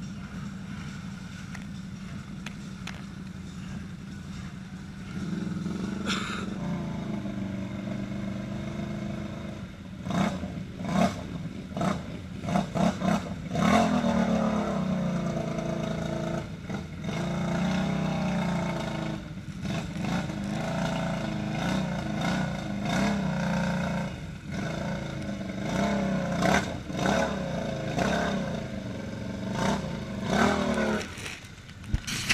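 ATV engines running and revving hard as the quads wade through deep mud water. The engine pitch climbs and falls with the throttle, louder from about five seconds in, with splashing water throughout the later part.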